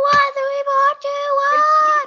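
A child's voice holding one long, steady sung note that rises slightly near the end.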